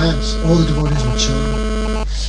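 Steady electrical mains hum through the microphone and sound system, with two short stretches of a man's voice in the first half.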